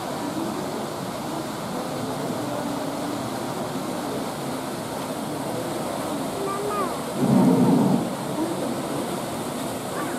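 Steady rush of water in the polar bear pool under the chatter of visitors' voices, with one loud dull burst lasting under a second about seven seconds in.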